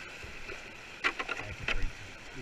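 Whitewater rapids rushing steadily around a kayak, with a cluster of sharp splashes and knocks from paddle strokes in the second half.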